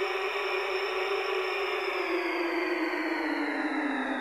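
A steady hissing drone with a low hum in it, both slowly sinking in pitch from about halfway through. It is an edited sound effect laid under a title card.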